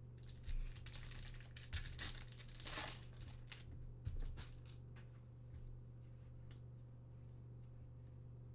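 Foil trading-card pack wrapper crinkling and tearing open, loudest about three seconds in, followed by faint rustling and clicks of cards being handled.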